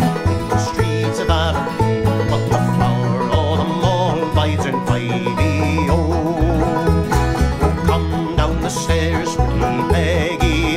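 Vega banjo strummed and picked in a steady folk rhythm under a man's singing voice, with a low bass pulse on the beat.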